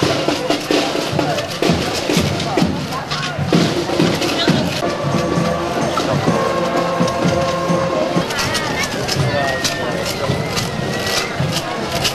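Music from a passing street procession, with held notes over frequent short beats, mixed with the talk and chatter of a crowd of onlookers.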